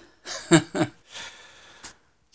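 A man laughing in short breathy bursts, then a soft breathy exhale, with one sharp click near the end.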